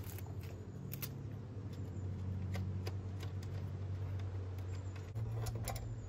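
Scattered light metallic clicks and taps of a hand tool and fingers working at the ignition coil's mounting bolts, over a steady low hum.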